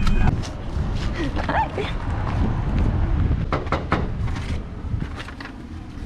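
Several sharp clicks and knocks scattered over a low steady rumble as people get out of a parked car: car doors and handling of the camera, with a brief faint voice.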